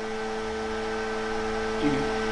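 Steady electrical hum made of several fixed tones, from the switched-on ESAB EM 210 MIG welder idling with its display lit. A voice comes in near the end.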